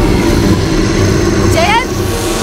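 Deep, rumbling monster sound effect over dramatic music as a giant creature sucks in air, with a short rising pitched sound near the end.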